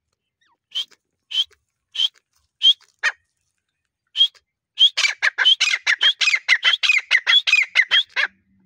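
Grey francolin (grey partridge) calling: a few single high notes spaced well apart, then after a short pause a fast run of repeated notes, about four to five a second, that carries on to the end.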